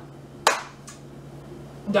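A single sharp hand clap about half a second in, followed by a much fainter second clap.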